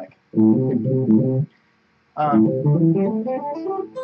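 Clean-toned Stratocaster-style electric guitar playing two quick runs of single picked notes on the first pentatonic scale fingering, each about a second long with a short pause between.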